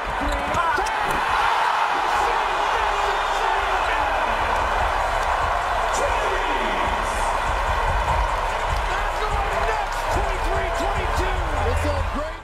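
Basketball arena crowd cheering after a slam dunk: a loud, sustained roar of many voices that swells about a second in and holds.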